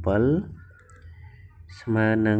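Speech briefly at the start and again near the end. In the quieter gap between, faint clicks of a stylus tapping on a tablet screen as handwriting is added.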